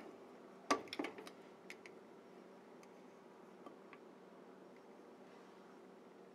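Frigidaire glass cooktop's control knob being turned on: a quick cluster of sharp clicks and light clinks about a second in, a few fainter ticks after. The rest is a faint steady hum.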